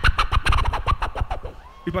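A beatboxer on a handheld microphone doing a fast run of mouth clicks and turntable-scratch imitations with falling pitch sweeps, stopping about a second and a half in.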